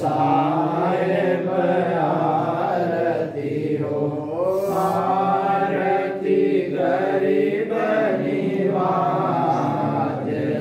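Voices chanting a devotional aarti hymn to a slow, drawn-out melody. The sung lines run on with only brief breaks.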